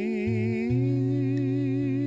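Woman singing a slow hymn, holding long notes with a gentle vibrato and stepping up slightly in pitch a little under a second in, over low sustained accompaniment.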